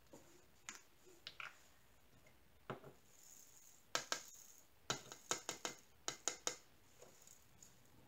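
Faint plastic clicks and ticks of resin diamond-painting drills being poured from a plastic sorting tray into a small storage container. A few scattered clicks come first, then a quick run of clicks from about the middle.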